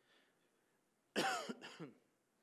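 A man coughing to clear his throat, in two close bursts: a loud first one about a second in and a shorter second one just after.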